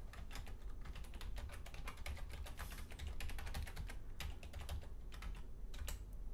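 Typing on a computer keyboard: a run of quick, irregular keystrokes, fairly faint, as a terminal command is entered.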